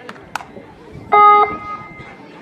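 A short, loud horn-like beep about a second in, one steady tone lasting under half a second, over crowd chatter. A sharp slap or clap is heard just before it.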